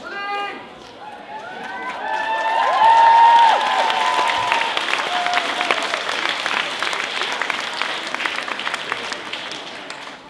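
Theatre audience and cast applauding, swelling to its loudest about three seconds in with cheering voices over the clapping, then gradually dying down.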